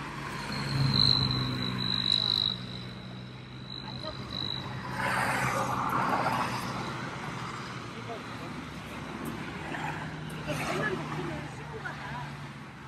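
Road traffic going by on the highway, with one vehicle passing between about five and seven seconds in, over a steady low engine hum. A thin high tone sounds for the first few seconds.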